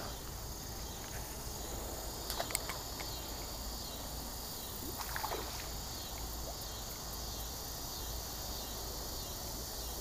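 Steady chirring of crickets and other insects at dusk, with a few brief faint clicks about two and a half and five seconds in.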